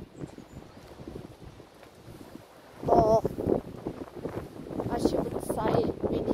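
Wind rumbling on the microphone and footsteps while walking outdoors, with a person's voice cutting in about halfway through and again near the end.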